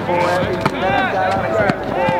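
People's voices calling out, not made out as words, with a few short sharp taps among them.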